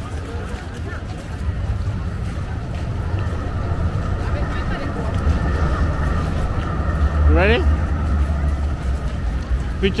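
Electric city tram passing at street level: a low rumble with a steady thin whine that swells through the middle, mixed with crowd voices. A short rising squeal cuts across about seven seconds in.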